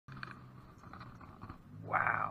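A rainbow trout splashing as it is lifted out of shallow creek water, a short rushing splash near the end, over a low steady hum.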